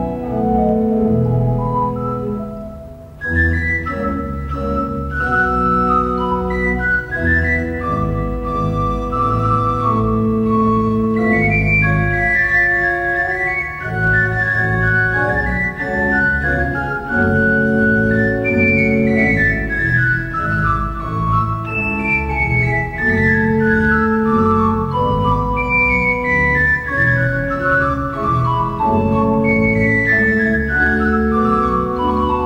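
A large organ playing a classical piece: quick falling runs of notes over sustained chords and a held bass line. There is a short lull about three seconds in, then the full sound returns.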